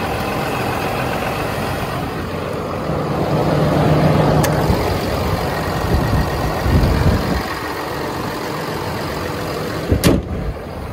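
Ram 5500's 6.7-litre Cummins turbo-diesel idling steadily, a little louder through the middle.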